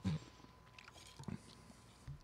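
Faint mouth sounds of a person drinking beer: a soft gulp at the start and another brief swallow about a second and a quarter in.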